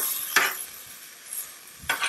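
Cubed chicken sizzling on a hot Blackstone steel flat-top griddle, with a metal spatula scraping across the griddle surface about half a second in.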